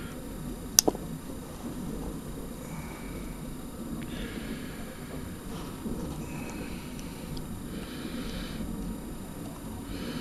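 Test-lead clips being handled and hooked onto a small stud-mount RF power transistor, with one sharp double click about a second in and soft rustling after, over a steady low bench hum.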